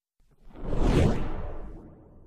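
A whoosh sound effect with a deep low rumble under it, swelling up about half a second in, peaking around one second and fading away: an edited-in transition effect for an end title card.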